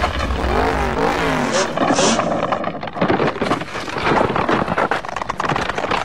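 Race car engine sound effect: several quick revs rising and falling in pitch in the first couple of seconds, then a rapid crackling rattle that cuts off suddenly at the end.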